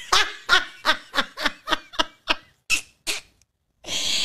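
A woman laughing hard: a quick run of about a dozen short bursts of laughter that stops a little after three seconds in.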